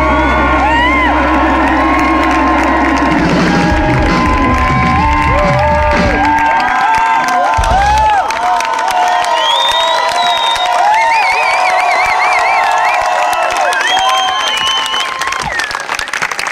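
A live rock band's song ends, its held chord over bass and drums stopping after a last hit about eight seconds in, and the crowd cheers and whoops loudly through to the end.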